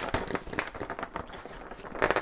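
Light, irregular tapping and rustling of an object being handled, with one sharper click at the start.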